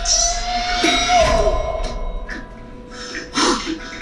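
Animated film trailer soundtrack playing: a held note for about the first second, then scattered short sounds, the loudest a little after three seconds.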